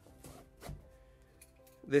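Faint background music, with a soft knock about two-thirds of a second in as a camera lens is pushed into a padded divider slot of a camera bag. A man starts speaking at the very end.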